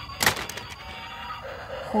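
A toy car set down into a plastic tub: one sharp knock about a quarter second in, then a few lighter clicks.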